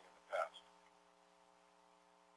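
A short burst of a voice about a third of a second in, then a pause with only a faint steady hum.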